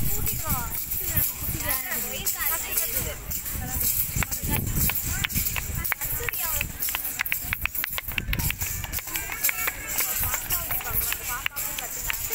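Spectators' voices and shouts with a run of sharp taps, several a second, over a steady low rumble.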